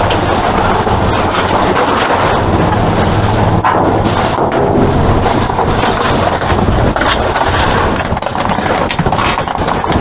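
Trash being rummaged through: plastic bags and bottles rustling and crinkling without a break, over a steady low rumble.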